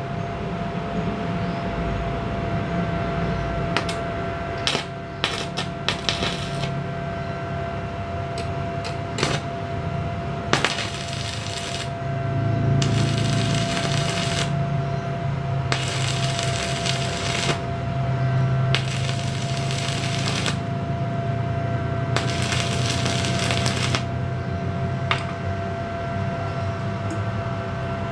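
Stick (arc) welding: five bursts of arc crackle, each about 1.5 to 2 seconds long, over the steady hum of the welding machine. The hum grows louder while the arc burns. A few sharp clicks come before the first burst.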